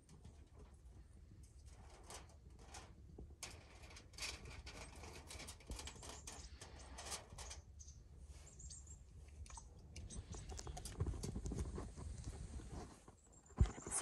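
Water poured from a plastic bottle pattering and trickling over crumpled aluminium foil: a faint, irregular crackle of small drips and ticks.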